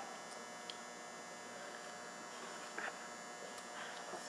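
Steady electrical hum of the room background, with a faint tick about a second in and a brief faint sound near three seconds.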